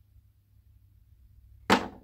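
A quiet room, then one sharp clack near the end as a thrown toss ring lands on the box beside the call bell, with a short ring-out.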